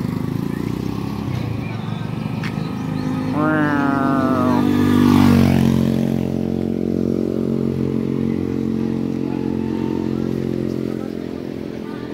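Small motorcycle engine running on the road. A few seconds in, its pitch rises as it accelerates, and it passes loudest about five seconds in. A steady engine drone carries on after it.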